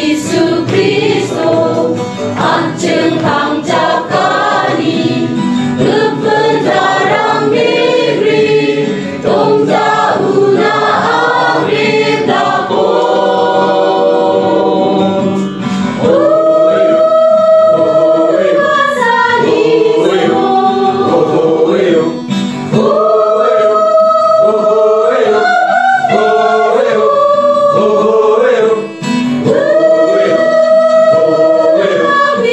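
Christian gospel song in Garo sung by a choir with musical accompaniment. In the second half the voices hold long, steady chords.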